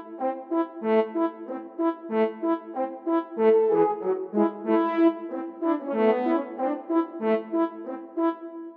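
Sampled French horn section from the Miroslav Philharmonik 2 virtual instrument playing a staccato pattern: a quick, rhythmic run of short detached notes, transposed up to play in A.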